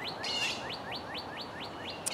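A songbird singing a fast run of short, rising whistled notes, about six a second, which stops a little before the end.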